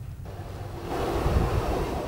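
Outdoor wind noise on the microphone: a steady rushing hiss that starts abruptly and grows louder about a second in.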